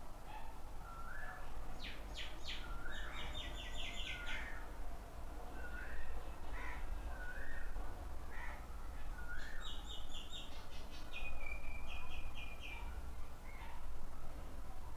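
Birds calling: short rising call notes repeated about once a second, with two spells of rapid high twittering, one about two seconds in and one about ten seconds in, over a steady low hum.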